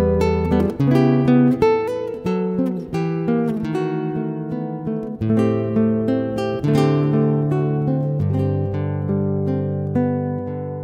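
Solo classical guitar playing a slow lullaby in a romantic style: a singing melody over plucked chords, some of them jazzy, and held bass notes.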